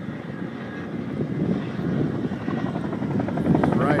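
Firefighting helicopter with a water bucket slung beneath it, flying toward the listener. Its rotor chop grows steadily louder as it comes closer.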